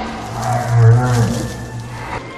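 Sound-designed Brachiosaurus call: one long, deep call that swells to its loudest just before a second in and then fades.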